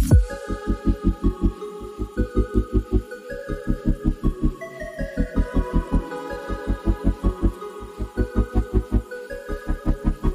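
Background music: a fast, even low pulse, about four beats a second, under held synth notes that step up and down.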